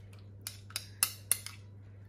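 Metal spoon stirring garlic butter in a small ceramic bowl, clinking against the bowl's side about five times, sharpest about a second in.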